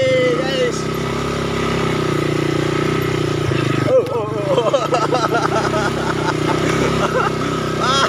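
Quad bike (ATV) engine running steadily under way, with a short knock about four seconds in, followed by voices calling out over the engine.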